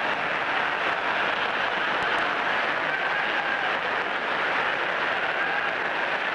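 A large audience applauding and laughing in reaction to a sarcastic remark, a steady wash of clapping heard through an old, hissy archive recording.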